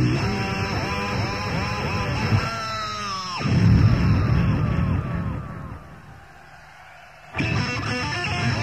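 Live electric guitar solo with bent notes and a rising slide about three seconds in. The sound then fades down about six seconds in and cuts back in abruptly just before the end.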